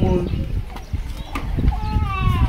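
A woman speaking into a hand microphone with a short pause in the middle, over a steady low rumble.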